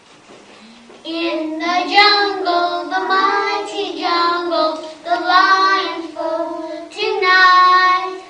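Children singing a song, starting about a second in with long held notes.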